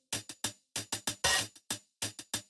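Electronic drum beat of a children's song, with no singing: short, quick drum hits, with one longer, hissier hit about a second and a quarter in.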